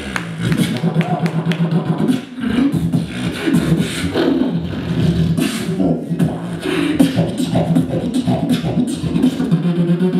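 Solo beatboxing amplified through a handheld microphone: a low held bass note under fast mouth-percussion clicks and snares, with a brief break a little past two seconds and the bass note coming back strongly near the end.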